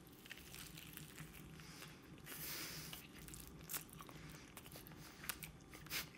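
Faint biting and chewing of a deep-fried, bacon-wrapped poutine roll, with scattered small clicks.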